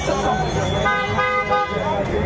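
A vehicle horn honks once, held for nearly a second, about a second in, over the chatter of a dense street crowd.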